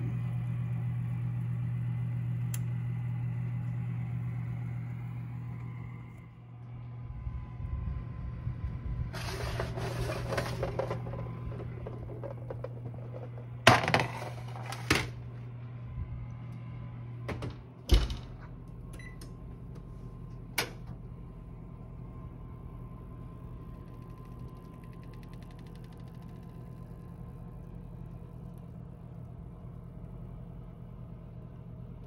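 A steady low hum from the open oven drops away about six seconds in. After a brief rustle, a metal baking sheet clanks several times, loudest about fourteen and eighteen seconds in, as it is pulled out and set down on the stovetop.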